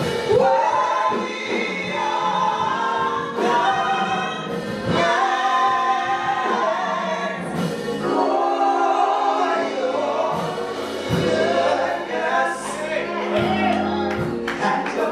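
Gospel singing by a vocal trio of two women and a man, sung into microphones and carried by the church's sound system.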